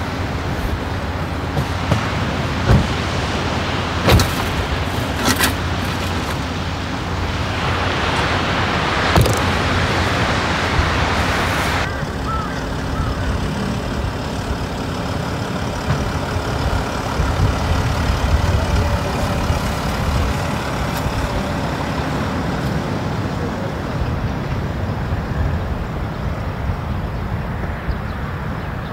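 A few knocks and clunks of gear being packed into the open boot of a Land Rover Discovery 4, over a steady low rumble. A hiss swells and then cuts off sharply about twelve seconds in.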